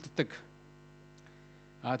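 A man's speech breaks off for a pause filled by a steady electrical mains hum with several even tones, then resumes near the end.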